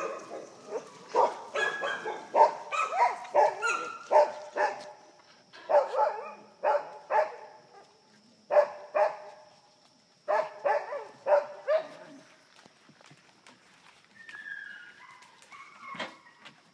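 Dogs barking at play in quick runs of short barks, several a second, in bursts that stop about twelve seconds in.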